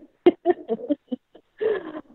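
A person laughing: a quick run of about seven short laughs that fade over a second or so, followed by a brief voiced sound near the end.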